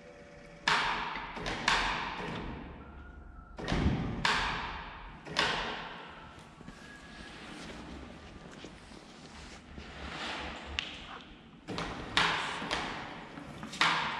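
A string of irregular knocks and clunks, seven or so, each ringing on in a large echoing hall. They come from the steel frame and suction pads of a crane-hung vacuum panel lifter being shifted and set down onto a metal-faced composite wall panel.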